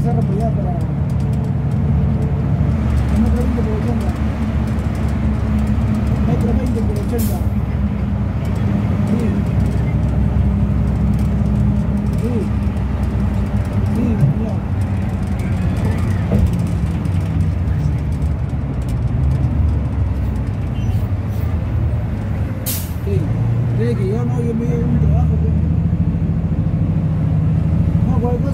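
Cabin noise of a city bus in motion: a steady engine and drivetrain drone whose pitch steps up and down a few times as it speeds up and slows. There are two short sharp clicks, one about seven seconds in and one about twenty-three seconds in.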